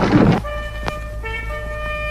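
A noisy burst of men's voices that cuts off abruptly, followed by sustained horn-like notes from the film's soundtrack, held as a chord that shifts to new notes about a second in.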